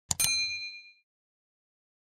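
Sound effect of a mouse click followed at once by a short bright bell ding. The ding rings out and fades in under a second: the notification-bell chime of a subscribe-button animation.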